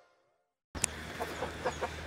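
Silence for the first part, then chickens clucking faintly: a click and a few short clucks.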